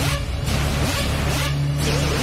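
Loud makina hard-dance music played live through a club PA: sustained bass notes under a dense, noisy high end, with gliding synth lines.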